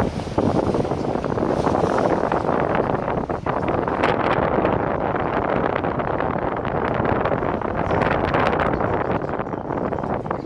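Steady rushing noise of a moving car: wind and road noise heard from inside the cabin, with wind buffeting the microphone.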